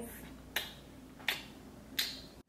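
Fingers snapping three times, evenly, about three-quarters of a second apart.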